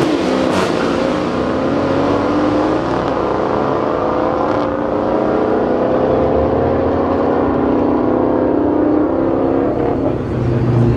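A car engine running with a loud, steady drone whose pitch climbs slowly.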